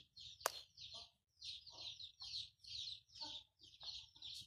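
Faint bird calls in the background: a quick run of short high chirps, about three or four a second, with lower clucking calls mixed in. A single sharp click comes about half a second in.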